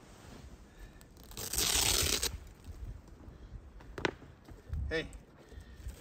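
A brief rustling noise lasting about a second, starting about a second and a half in, with a short sharp sound near four seconds; a voice says "hey" near the end.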